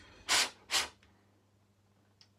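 Two quick, sharp puffs of breath about half a second apart, blowing on the freshly drilled key grip held in a cloth. A low steady hum lies underneath.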